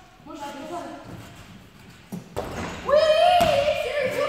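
A thud about two seconds in, then a young person's long, high-pitched shout, echoing in a large gym hall.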